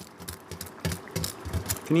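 Crisp breadcrumbed katsu chicken pieces crackling and crunching as metal tongs squeeze and lift them on a baking tray: a quick run of irregular crisp clicks.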